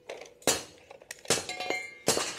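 Hammer striking steel: a handful of sharp metallic clanks, the later ones leaving a short ringing tone.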